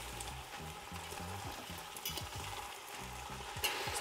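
A spoon stirring raw rice with peas, potato and cashews in hot oil in a stainless steel pot: a steady, fairly quiet sizzle with scraping of the spoon through the grains as the rice is sautéed before the water goes in.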